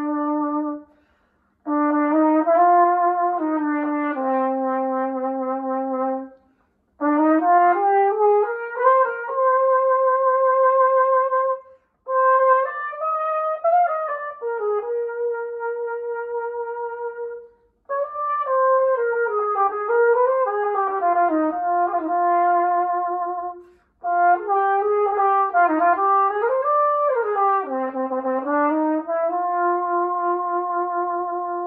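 Yamaha YFH-635 flugelhorn with a Denis Wick 2FL mouthpiece, played solo and unaccompanied: a slow melody in six phrases separated by short breath pauses. Most phrases end on a long held note with vibrato.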